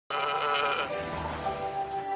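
Cartoon soundtrack music that opens with a wavering, quavering note for about the first second, then settles into held tones.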